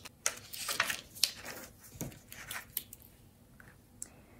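A sheet of vellum rustling and crinkling as a flap is folded up and creased flat by hand, in a series of short scrapes that die down near the end.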